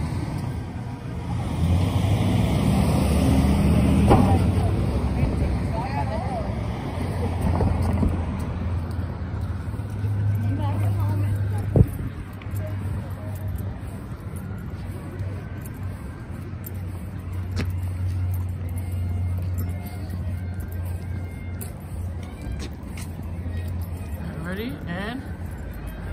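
Street sound while walking: a steady low traffic rumble with faint voices of people nearby, and one sharp knock about twelve seconds in.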